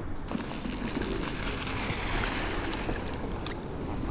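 Steady rushing noise of wind and water, with a few faint ticks near the end.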